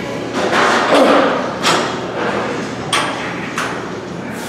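A set of heavy weighted dips on a dip station: four short bursts of effort noise and knocks, one with each rep, the first and longest about half a second in.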